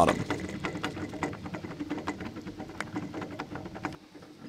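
Campfire crackling with a quick, irregular run of small sharp pops over a faint low hum.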